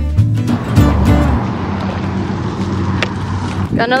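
Upbeat acoustic-guitar background music that stops about a second and a half in, followed by a steady hiss.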